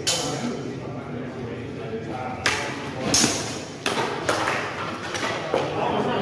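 Spear-and-buckler sparring: sharp knocks and clacks of spear shafts meeting shafts and bucklers, one at the start and then a quick run of strikes about half a second to a second apart through the middle, with shoes scuffing on concrete pavement. The hits ring a little under the concrete ceiling.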